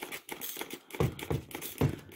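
Plastic trigger spray bottle of window cleaner being pumped, about three short spritzes with fainter clicks between. The nozzle is spraying poorly, which the user suspects may be set to off.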